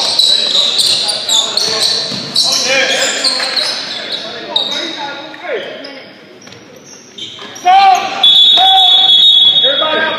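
Basketball game sounds echoing in a gym: a ball bouncing and sneakers squeaking on the hardwood, with players' voices. Near the end someone shouts, then a long, steady referee's whistle blast.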